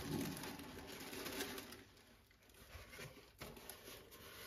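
Cardboard shoebox lid and tissue paper being handled: soft rustling and scraping, louder in the first two seconds, then a few faint taps.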